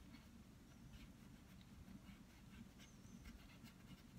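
Near silence: faint room hum with soft, irregular scratches of a fine paintbrush on canvas.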